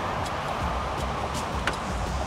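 Trunk lid of a Lexus GS F being pulled shut by its power trunk closer, with a faint click of the latch about one and a half seconds in, over a steady hiss of background noise.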